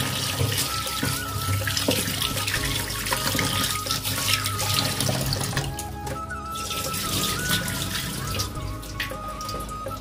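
Tap water running into a steel bowl in a stainless-steel sink as a hand swishes and rinses raw chicken pieces. The flow stops about six seconds in, leaving drips and wet handling. Background music plays throughout.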